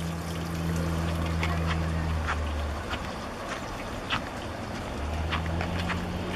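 A low steady engine hum that fades out about three seconds in and comes back about five seconds in, with faint short high ticks scattered through.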